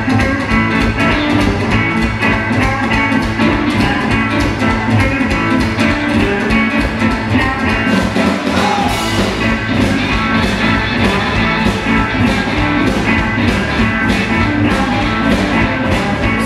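Live blues band playing an instrumental passage: electric guitars, bass and drum kit over a steady beat, with the bass and kick dropping out briefly about eight seconds in.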